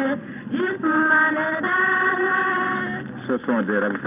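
A group of young girls singing the traditional song of the water ceremony, held sung notes that end about three seconds in. A man's voice starts speaking just after. The recording is old and narrow-band.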